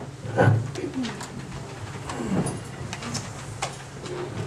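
Chairs creaking as several people sit back down: three falling-pitched squeaks, the loudest about half a second in, then a few light clicks and knocks.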